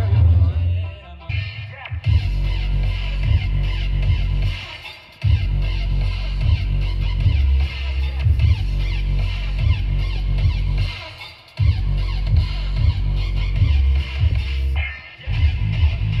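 Music played loud through a DJ sound system of two subwoofer cabinets and two top cabinets, set up to run without its treble horns. The bass is the strongest part, and the music dips briefly every few seconds.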